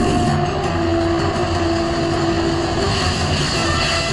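Cartoon sound effects of jet-powered flying robots: a steady, loud rushing noise like jet thrusters, with a held note of the orchestral score underneath.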